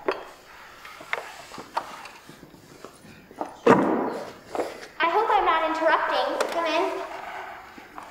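Light knocks and footsteps on a wooden stage floor, a sharp thump about three and a half seconds in, then a child's voice for a couple of seconds.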